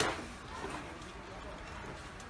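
Quiet shop background noise with faint, indistinct voices in the distance, opening with one short sharp click.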